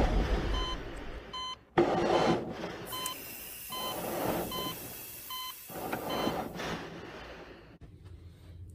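Short electronic beeps of a hospital patient monitor, repeating about every half second to a second, over swells of rushing noise that fade away near the end.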